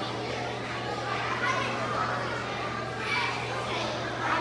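Many children talking at once in a school cafeteria, a steady din of chatter echoing in a large room, over a steady low hum.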